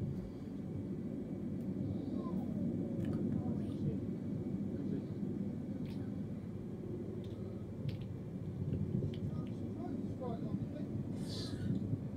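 A steady low rumble, with faint distant voices calling now and then.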